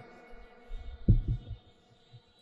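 A few low, dull thumps of the stage microphones being handled on their stand as one speaker takes over from another, over a faint fading hum of the PA, cutting to dead silence shortly before the end.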